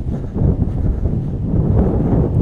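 Wind buffeting the microphone: a loud, steady, low rumble.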